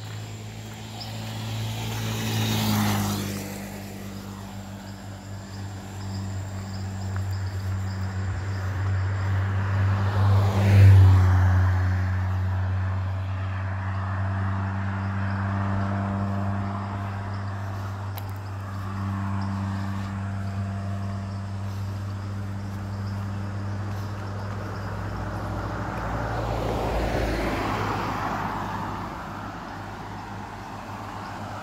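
Cars passing one after another on a paved road, the loudest going by about eleven seconds in and a pickup truck approaching near the end, over a steady low hum.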